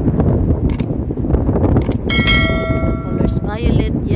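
Wind buffeting the microphone, with two short clicks and then a bright bell-like chime about two seconds in that rings for about a second and stops: the click-and-bell sound effect of a subscribe-button animation.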